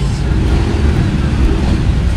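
A steady low rumble of background noise, with faint voices in it.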